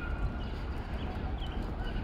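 Outdoor city ambience: a steady low rumble with small birds chirping faintly and repeatedly.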